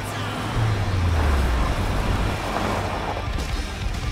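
Car engine revving hard as the car speeds over a dirt lot, with tyre and road noise. The low engine rumble swells about a second in, with background music underneath.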